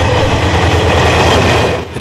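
Diesel locomotive hauling a passenger train past at close range: a loud, steady rumble of engine and wheels on the rails, cut off abruptly near the end.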